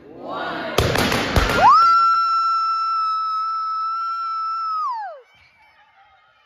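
A large black confetti balloon bursting with two sharp bangs about a second in, popped for a gender reveal, followed by one long high-pitched scream held for about three seconds that drops in pitch and dies away near the end.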